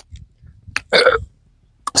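A woman burps loudly once, about a second in, with a short click just before it.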